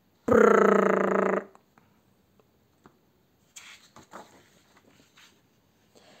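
A person blowing a loud, steady 'prrr' raspberry, imitating a big fart, lasting about a second near the start. Faint papery rustling follows as a picture-book page is turned.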